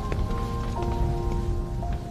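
Crackling fire in a large furnace under background music of long held notes.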